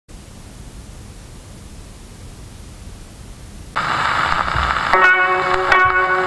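Faint hiss, then about three and a half seconds in a sudden loud rush of shellac surface noise as the gramophone needle enters the groove of a 1928 Victor 78 rpm record. About a second later a koto trio begins, plucked notes ringing out over the crackle.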